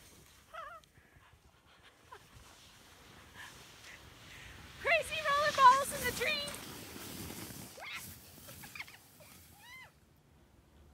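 A skier's high-pitched, wavering whoop about five seconds in, with a few shorter yelps around it, over the hiss of skis running through deep powder snow.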